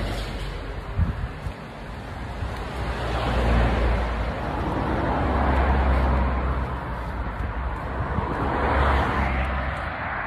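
Wind buffeting a phone's microphone, a rumbling rush that rises and falls in gusts every few seconds, with one brief knock about a second in.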